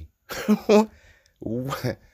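A man laughing in two short bursts.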